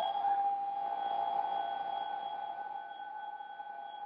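Radio receiver audio: one steady, held electronic tone with a few fainter tones above it, over a constant hiss.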